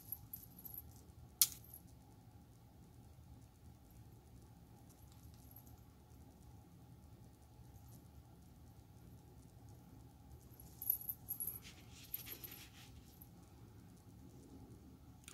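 Faint handling sounds of hands working a fabric bow, lace and a glue bottle: one sharp click about a second and a half in, then a short cluster of soft rustling and crinkling near the end, over quiet room tone.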